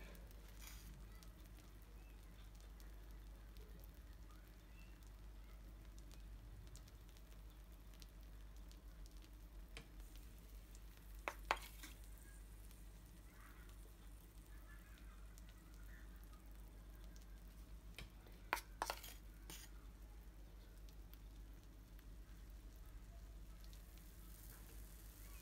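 Near silence with a steady low hum, broken by a few light clicks of a metal fork against the icing bowl or glass baking dish, once near the middle and again about three quarters through.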